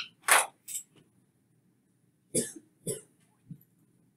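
A person coughing in two short bouts: three coughs right at the start, then two more with a faint third about two and a half seconds in.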